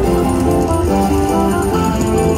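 Video slot machine's win music: a melody of short stepped notes over a steady low beat, with jingling coin effects, as the win meter counts up during free spins.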